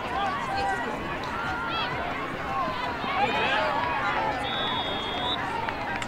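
Many voices calling and talking across an outdoor lacrosse field, none clearly worded, with a short steady whistle blast about four and a half seconds in.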